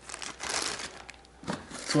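Clear plastic bag crinkling as it is handled around a water pump inside it, loudest in the first second and then fading.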